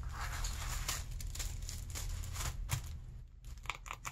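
Tissue paper rustling and crinkling under hands sliding a tissue-wrapped package across it, in irregular short crackles over a steady low hum.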